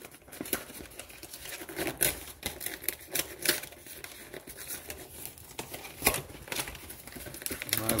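A stubborn cardboard trading-card collection box being worked open by hand: irregular crinkling and clicking of cardboard and plastic packaging, with sharper snaps about two, three and a half, and six seconds in.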